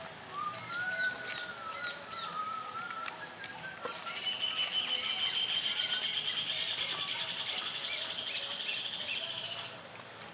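Birds calling: a wavering whistle for the first few seconds, then a long, rapid, high trill lasting about five seconds, with a few faint clicks.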